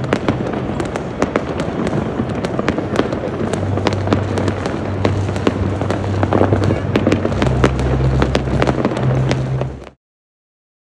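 Many fireworks going off over a city: a dense, continuous barrage of sharp bangs and crackles, cutting off abruptly just before the end.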